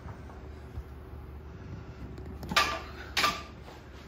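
Two short metallic clanks about half a second apart, near the end, from the iron plates and handles of a loaded octagon deadlift bar shifting as it is lifted, over a low steady hum.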